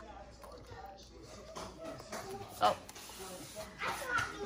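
Mostly quiet room with faint background voices, and a woman's short "oh" about two and a half seconds in.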